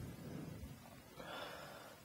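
A person breathing out once, faintly, for about half a second, past the middle.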